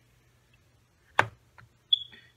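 A cologne box handled against a glass tabletop. After a quiet stretch comes one sharp click about a second in, then a faint tick and a brief high squeak near the end.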